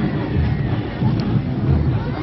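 Wind buffeting the microphone: an uneven low rumble, with faint crowd voices behind it.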